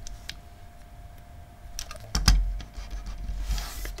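Small clicks of a die-cast toy car being handled, then a knock about two seconds in as it is set down on a wooden table and pushed along, its tyres rolling with a low rumble.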